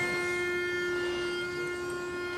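Pitch pipe blown to give the barbershop quartet its starting note: one steady, unwavering tone held the whole time.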